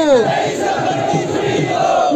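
A large crowd of marchers shouting together, one loud continuous mass of voices. A single leading voice's call drops in pitch just as it begins.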